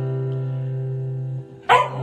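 A steady held musical chord, broken near the end by a sudden loud dog bark.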